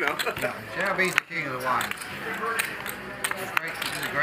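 Murmured talk around a poker table, broken by a few sharp clicks of poker chips being handled, the clearest about a second in.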